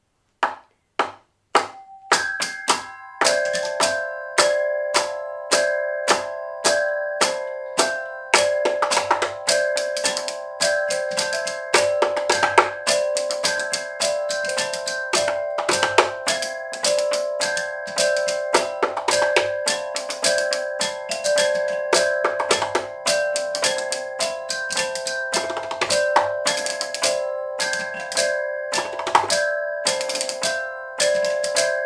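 A hand tapping rhythms on a wooden stool top, echoed two beats later by rhythmic tapping robots whose solenoids strike the surfaces they sit on, so each pattern repeats in layers. The taps come as a fast, dense rhythm of sharp clicks. After about two seconds, steady pitched ringing tones join in and carry on under the clicks.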